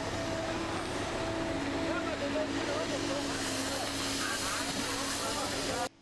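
Steady construction-site noise: machinery running under a wide hiss, with a few faint steady tones, cutting off suddenly near the end.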